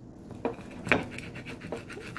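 Pizza being cut and a piece pulled apart on a ceramic plate: scratching and scraping of the crust against the plate, with a couple of sharp clicks, the loudest about a second in.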